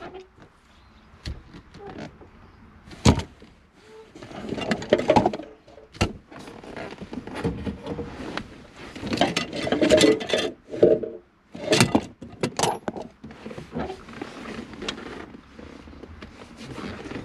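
Hands and tools working on a car's interior plastic trim: scattered sharp clicks and knocks of parts being pried and handled, with rustling between them.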